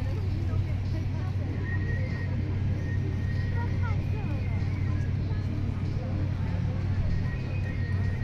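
Steady low rumble of background traffic, with no distinct events standing out.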